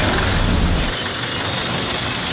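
Steady street noise from a motor vehicle engine running close by. The low rumble is heaviest for about the first second, then eases.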